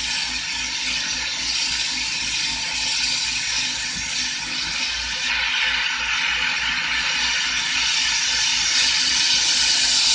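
Carlisle CC lampworking torch flame hissing steadily as borosilicate glass is heated in it, a little louder from about halfway.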